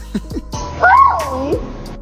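Background music, with one short vocal cry about halfway through that rises and then falls in pitch.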